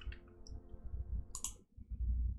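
A short, sharp click about one and a half seconds in, against a faint low rumble of room noise.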